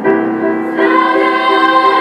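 Girls' chamber choir singing in harmony with piano accompaniment; the voices come in together right at the start, over a steady pattern of repeated piano notes.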